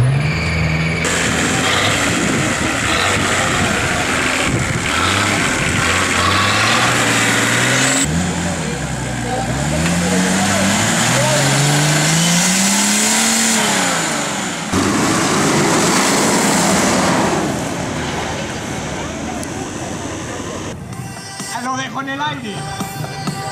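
Off-road 4x4 engines revving hard and easing off under load as the vehicles climb steep dirt mounds. The pitch sweeps up and down repeatedly. The sound cuts abruptly between several short clips.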